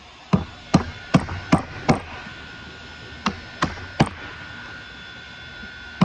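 A chisel struck with a mallet, chopping out the mortise in a hardwood plane body: five quick blows, a pause, then three more.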